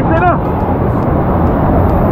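Loud, steady rush of whitewater pouring down a waterfall cascade, with a short whooping voice right at the start.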